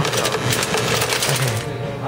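Soda-fountain ice dispenser dropping ice into a paper cup: a dense, fast rattle and clatter of cubes that cuts off about one and a half seconds in. Background music plays underneath.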